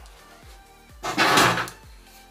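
The plastic cover of an electrical breaker panel being handled after it has been unclipped: a brief, loud scrape about a second in. Background music with a steady beat plays underneath.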